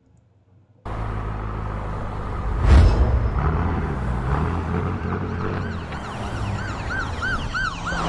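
Police car siren yelping, its pitch rising and falling quickly and repeatedly, over a low steady rumble; the sound cuts in suddenly about a second in, with one heavy hit about two seconds later as the loudest moment.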